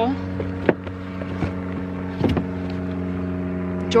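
Steady, unchanging hum of an idling engine, with about three light knocks as leather shoes are handled in a plastic tote.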